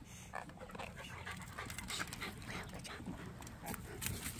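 A dog panting, faint, with scattered small clicks and rustles.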